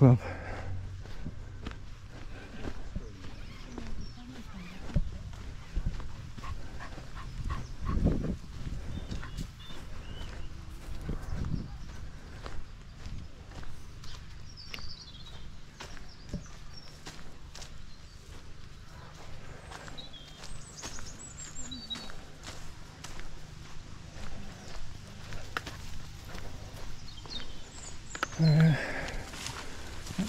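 Footsteps walking along a sandy, then gravelly path, irregular and uneven, with a few short high bird chirps now and then.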